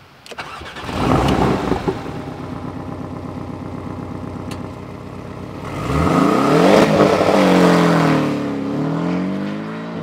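Porsche 718 Boxster's turbocharged flat-four engine cranked and started, catching with a loud flare about a second in, then idling steadily. About six seconds in it is revved up and falls back. Its four-cylinder boxer note sounds rather strange.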